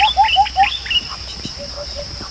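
Birds chirping: a quick run of four short hooked notes, then softer calls near the end, over a steady high-pitched drone.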